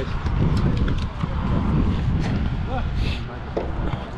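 Indistinct voices of people talking nearby, over a steady low rumble, with a few faint ticks.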